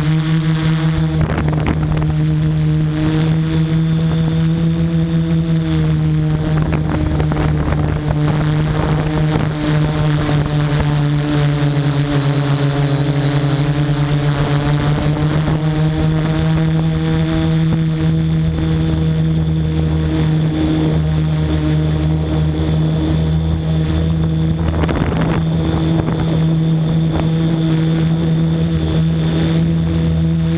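MikroKopter multirotor drone's electric motors and propellers humming loudly and steadily in flight. The pitch sags and rises again partway through as the motors change speed.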